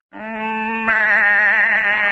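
A man's voice giving one long, wavering sheep-like bleat, a comic imitation of a ram's call, which gets louder about a second in.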